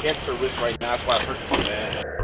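Speech: a voice talking over a steady hiss on a body-worn police camera microphone.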